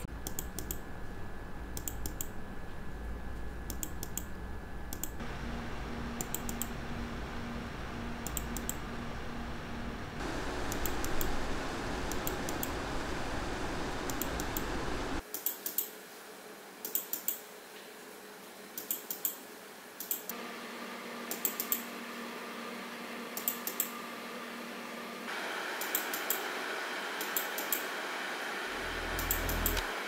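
Desktop PC CPU cooler fans running, a steady whoosh that shifts in level and pitch about every five seconds as the cooler fan speed is stepped, in the second half an AMD Wraith Prism at 2000 RPM and then at its maximum above 3000 RPM. Computer mouse clicks tick over the fan noise in pairs.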